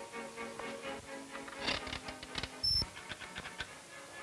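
Background music score with held, sustained notes. In the middle comes a quick run of sharp clicks and knocks, with one brief high beep among them.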